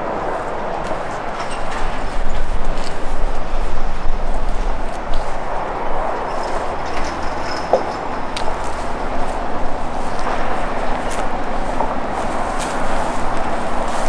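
Steady rushing outdoor noise with a low rumble that comes and goes in the first half, and scattered light ticks and rustles.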